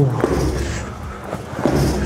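A side kick landing on a heavy hanging punching bag: a dull thud right at the start, then a fainter knock later.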